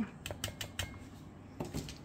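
Light clicks and taps of kitchenware being moved on a benchtop: a plastic sieve and glass measuring jug shifted aside. There are a few separate clicks in the first second and a short cluster near the end.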